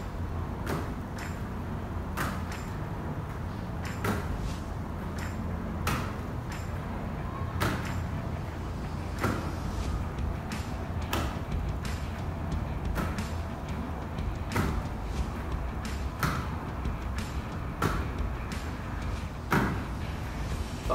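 Rugby ball slapping into two hands as it is thrown up and caught, a sharp smack about every one and a half to two seconds, each with a lighter tap just after. A steady low rumble runs underneath.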